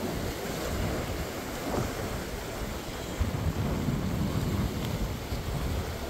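Sea surf washing among rocks, with wind buffeting the microphone in a low, uneven rumble.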